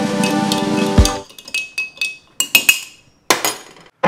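Background music stops about a second in on a low thump. Then a spoon clinks repeatedly against a ceramic mug, as in stirring a drink, with a light ring after each tap.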